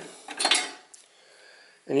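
Sheet-steel belt cover from a Hustler Fastrak mower clinking and rattling as it is picked up and handled, with a cluster of metal clinks about half a second in.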